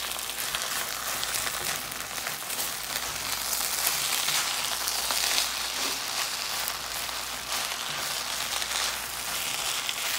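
Chicken fried rice sizzling in a nonstick pan as it is stirred and chopped with a spatula: a steady frying hiss with many small crackles and scrapes.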